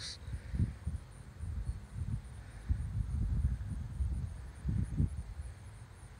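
Irregular low rumbling, coming and going in gusts: wind buffeting the microphone.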